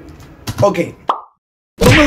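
Faint tail of a pop song fading out, a spoken 'ok', then a short rising pop-like sound. A moment of dead silence follows before talking starts again.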